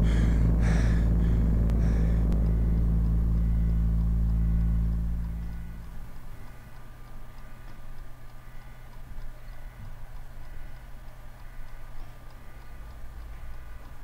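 A loud, steady low rumbling drone, with a runner's rhythmic strokes about every half second over it for the first two seconds. The drone fades out about five seconds in, leaving a faint, quiet hum.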